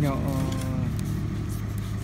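A vehicle engine idling, a steady low hum, with a drawn-out spoken word over it in the first second.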